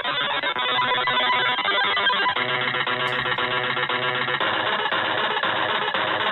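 Harsh, glitchy electronic music played by the Hydrogen malware payload: a dense, buzzy stack of tones whose pattern shifts abruptly a couple of times.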